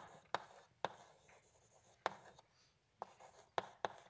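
Chalk writing on a blackboard: irregular sharp taps and short scratches as the letters are formed, with a quieter stretch in the middle.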